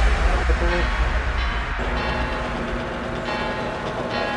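Electric line-winding machine running steadily, spooling fly line onto a reel, with a steady low hum.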